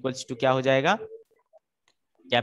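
A man speaking for about the first second, his last syllable drawn out, then silence.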